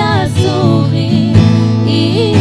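Two women singing a Portuguese-language worship song together into handheld microphones, with held, wavering vibrato notes over a steady instrumental accompaniment.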